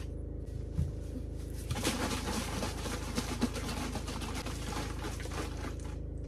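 Soil, pebbles and water sloshing and rattling inside a large plastic jar shaken by hand, starting about two seconds in, mixing a soil sample with water for a soil test. A steady low hum runs underneath.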